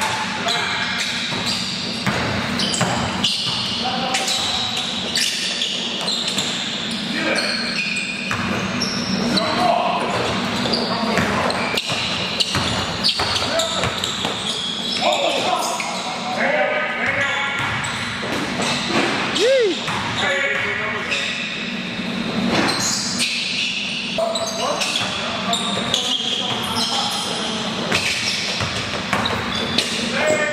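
Basketball game in a large gym: a ball bouncing on the court amid players' shouts and calls, with one loud "woo" a few seconds in.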